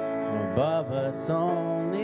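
A song: steady held instrumental accompaniment with a singing voice coming in about half a second in.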